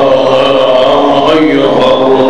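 A man's voice chanting a slow, melodic line in long held notes, with the pitch bending between them.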